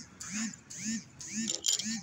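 A person's voice murmuring quietly in short, rising-and-falling sounds, well below normal talking level, with one light click near the end.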